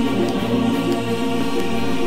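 Dramatic background score of long, sustained held chords with a choir-like voice pad.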